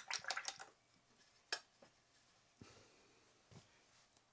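A size seven watercolour brush being loaded and used to splatter paint: a quick run of faint wet taps and splashes, then a sharper tick and two soft single taps.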